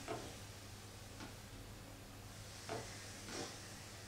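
Quiet room tone with a steady low hum, broken by a few faint brief sounds, the last a soft hiss about three and a half seconds in.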